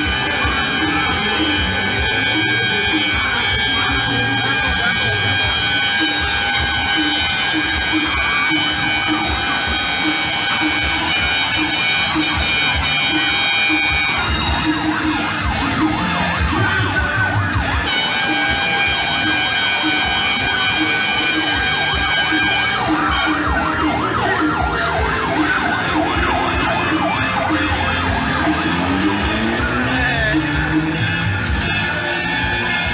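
Sirens and horns from the parading trucks sound continuously as several steady tones held together, with a rising wail near the end. Music and voices are mixed in underneath.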